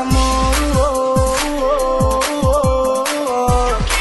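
Instrumental break in a Latin romantic-style song, without vocals: held synth melody lines with small pitch bends over a steady beat, with deep bass hits that slide down in pitch two or three times a second.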